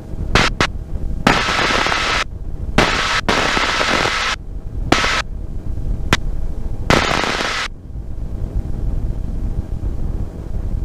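1952 Bell 47G helicopter's piston engine and rotor running low and steady through a landing approach. Over the drone come several abrupt bursts of loud hiss, some brief and some about a second long, which stop about eight seconds in.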